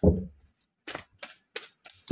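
A tarot deck being shuffled by hand: a loud dull thump at the start, then four or five short snaps and rustles of cards.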